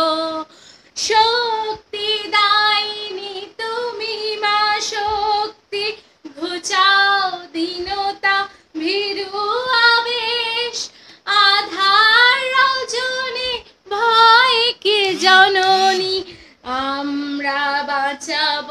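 A woman singing a Bengali patriotic song solo and unaccompanied, in phrases of a second or two with short breaths between them.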